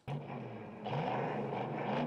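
Film soundtrack of a muscle car's V8 engine running, cutting in abruptly as playback resumes and getting louder about a second in.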